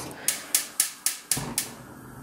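Gas range burner igniter clicking about six times in quick succession, about four a second, then stopping once the burner lights.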